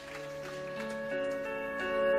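Soft instrumental music opening a new song: sustained notes enter one after another and build into held chords, growing gradually louder.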